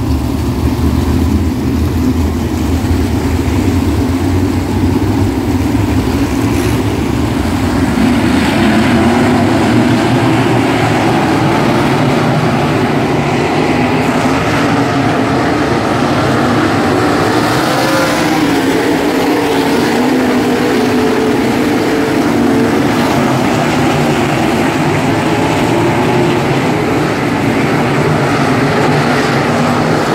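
A field of 305 winged sprint cars with 305-cubic-inch V8 engines running together around the track. The loud engine noise is continuous, and its pitch rises and falls as cars pass.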